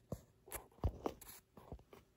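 A handful of faint, scattered clicks and one soft knock: handling noise as the camera is moved in close over a pile of quarters.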